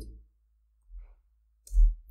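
A single sharp click near the end, from work at the computer keyboard or mouse while coding, with a faint soft tap about a second in. A low electrical hum lies under it.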